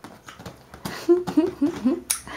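Baby splashing and slapping his hands on the water and the inflatable vinyl duck tub, a quick run of knocks and splashes. From about halfway, short rising and falling babbling calls come in.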